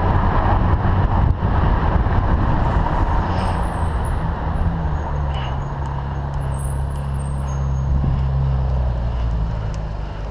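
Ferrari 458 Italia's V8 running at low revs close ahead of a moving bicycle, mixed with rushing wind noise on the bike's microphone. The engine settles into a steady low hum about halfway through as the car slows to a stop.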